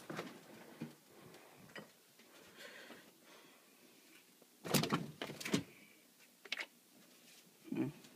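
Refrigerator door and the cartons and bottles inside it being handled: a few faint clicks, then a quick cluster of knocks and rattles about five seconds in and one more click a second later.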